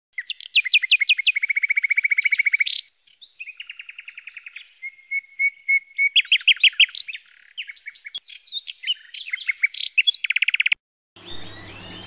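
A canary singing: a song of fast trills, each a long run of rapid repeated notes, one after another. The song cuts off suddenly about a second before the end. After a moment of silence, many caged birds chirp over a low hum.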